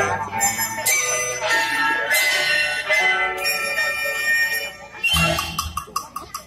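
Orchestra with strings and winds playing an arrangement of a Taiwanese folk song, with sharp ringing notes struck about once every second and a quarter and a heavier low hit about five seconds in.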